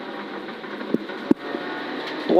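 Subaru Impreza N4's turbocharged flat-four engine running with tyre and road noise, heard inside the rally car's cabin as a steady din. Two short sharp clicks come about a second in.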